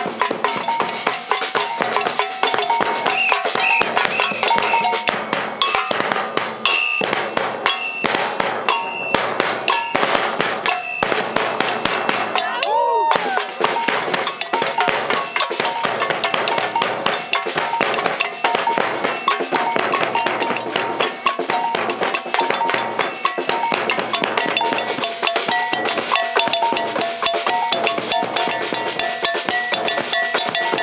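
A street percussion group playing snare drums and a double cowbell together in a fast, steady rhythm, with a brief break about halfway through.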